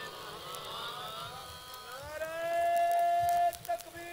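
A man's voice over a public-address system, faint at first, then gliding up about two seconds in into one long, high sung note that breaks off shortly before the end.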